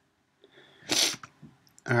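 A single short, loud burst of breath noise from a person close to the microphone, about a second in, like a sharp sniff or sneeze.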